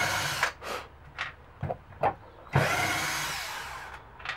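Cordless drill-driver driving screws into wood. It runs for under a second at the start, gives a few short blips, then makes a longer run of about a second and a half near the end that fades as it stops.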